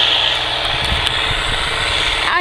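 Distant farm tractor running steadily while pulling a disc harrow, heard under wind rumbling on the microphone, which swells about a second in.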